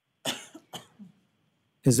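A person coughing: a few short coughs starting about a quarter second in, picked up by a meeting microphone, then a voice starts speaking near the end.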